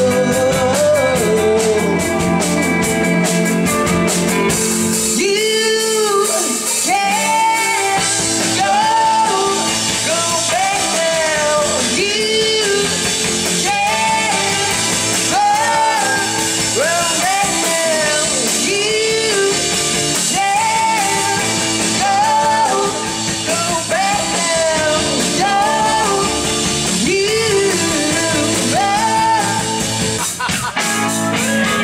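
A live rock band playing: electric guitars, bass guitar and drums, with a lead melody in short phrases that bend up and down, repeating every second or so from about five seconds in.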